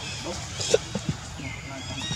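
Macaques calling: short pitched chirps and squeals, with one sharp, louder sound about three quarters of a second in.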